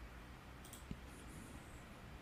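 Faint computer mouse clicks, with a soft low thump just under a second in, over a low steady room hum.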